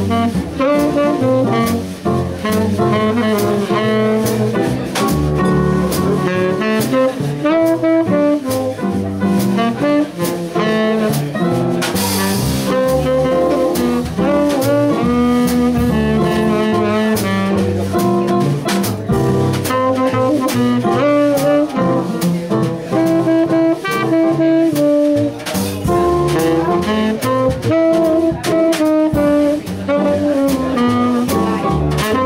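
Small jazz combo playing live: saxophone carrying the lead line over upright double bass, keyboard and drum kit, with a cymbal crash about twelve seconds in.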